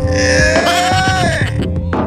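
Background music with a comedy sound effect laid over it: one long, high-pitched cry that rises slightly and falls away, lasting about a second and a half.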